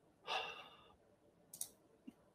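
A man's short, breathy sigh through the mouth, followed by a brief faint click about a second and a half in.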